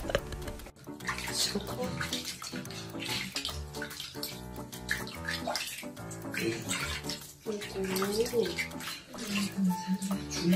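Background music with a singing voice, over water sloshing and splashing in a plastic basin as a guinea pig is washed by hand.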